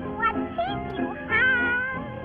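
Cartoon band music under a high, wavering, meow-like cry that rises and falls in short glides, the longest near the end.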